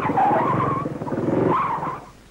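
Motorcycle engine running with a skidding tyre screech over it, cutting off abruptly near the end. This is the sound of the chain coming off and jamming the rear wheel, so that the bike skids and crashes.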